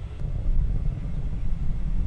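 Low, steady rumble of a distant Atlas V rocket in powered flight, growing a little louder about a quarter of the way in.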